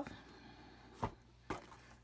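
Cardstock explosion box having its lid lifted off and its side panels dropping open onto a wooden table: two short taps, about a second in and again half a second later.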